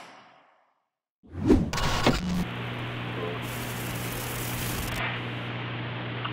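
A soft whoosh fading out, then a short silence, then a burst of static with a couple of sharp clicks that settles into a steady electrical hum under tape hiss: a VHS-tape playback sound effect.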